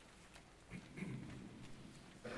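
Quiet pause in a resonant church with a few faint clicks, then a soft low voice sounding a sustained pitch from about two-thirds of a second in.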